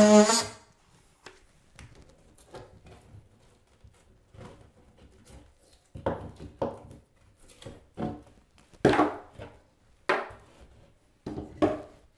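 Cordless oscillating multi-tool with a half-moon drywall blade, running with a steady pitched buzz and cutting off about half a second in. It is followed by scattered short knocks and crunches as the cut-out drywall is pulled and broken out of the hole by hand, louder in the second half.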